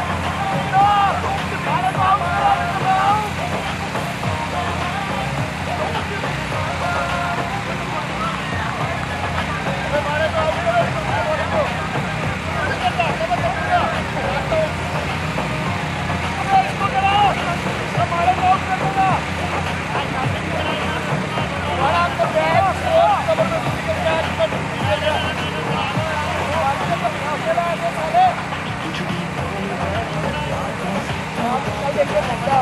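Overlapping voices of several people talking, too indistinct to make out, over a steady low rumble.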